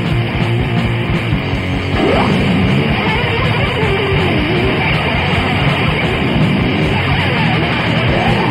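Instrumental passage of a raw 1994 blackened thrash metal demo recording, with distorted electric guitars over a fast, dense backing. Notes slide up and down in pitch about two seconds in and again around the middle.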